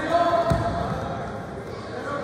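Shouting voices echoing in a gym, loudest in the first second, with one dull thud about half a second in.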